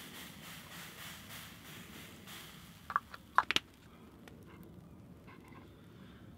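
Olive oil spray hissing from a pump-spray bottle into a hot cast-iron frying pan for about two seconds, then fading. A few sharp clicks or knocks follow about halfway through.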